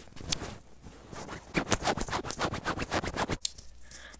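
Rapid, close-up scratching and rubbing right at a wired earphone's inline microphone, as fingers handle the mic and its cable. It grows denser from about a second in.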